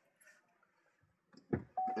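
Near silence, then a thump about one and a half seconds in, followed by a steady electronic chime tone from the car that starts just after and keeps sounding.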